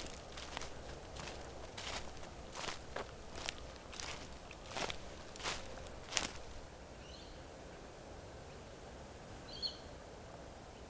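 Footsteps of someone walking outdoors on grass and a concrete path, a steady pace of about one step every 0.7 s, stopping about six seconds in. After that, only faint outdoor background with two short high chirps.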